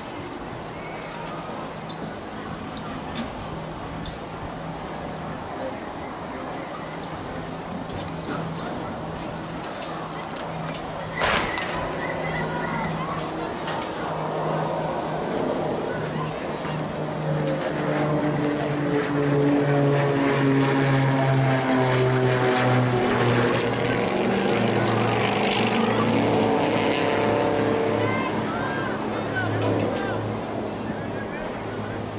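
A starting pistol fires once, a sharp crack about eleven seconds in, over background chatter and a steady low drone. From a few seconds later, spectators' voices swell into loud shouting and cheering while the race is run, easing off near the end.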